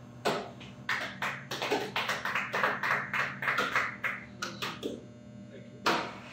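A small group of people clapping, uneven overlapping claps for about five seconds, thinning out near the end.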